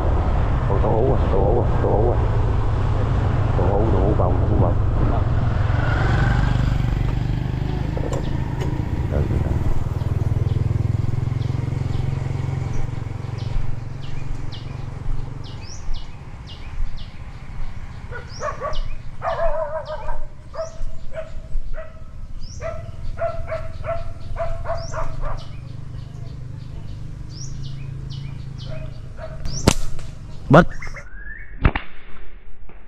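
Motor scooter engine running under way, with wind on the microphone, dying away about halfway through as the bike stops. Then small birds chirp repeatedly in short calls, and a sharp snap comes right at the end.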